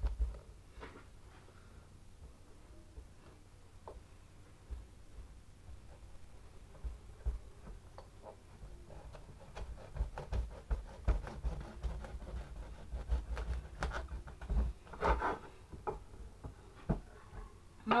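A kitchen knife cutting into a tough-skinned marrow on a board: scattered clicks, scrapes and knocks, sparse at first and busier from about halfway.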